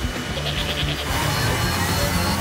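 Background music from an animated cartoon, with a short quavering sound effect about half a second in.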